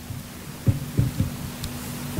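A few soft, low thuds over a steady low hum, the kind of handling and bumping a podium microphone picks up. The thuds come about half a second in, twice around one second, and once near the end.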